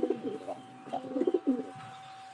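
Siraji pigeons cooing: a short low coo at the start, then a longer warbling bout about a second in.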